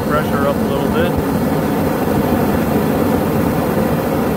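Homemade gas forge burner firing in open air at about 2 psi, with a steady rushing noise of flame and gas; the burner is not yet tuned.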